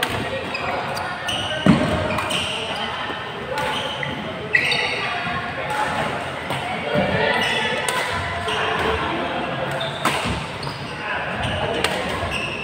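Badminton rally in a large, echoing hall: sharp racket hits on the shuttlecock, the loudest about two seconds in and again a couple of seconds later, with shoe squeaks on the court mats and players' voices around.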